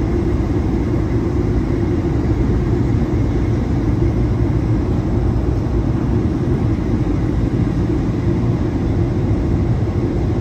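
Airliner cabin noise during the descent to land: a steady, unbroken rush of engines and airflow heard inside the cabin, heaviest in the low end.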